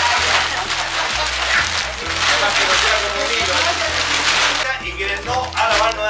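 Background music with a steady bass beat over a loud rustling hiss of clear plastic sheeting being spread and crinkled over the steaming curanto pit; the hiss stops shortly before the end, with voices faintly underneath.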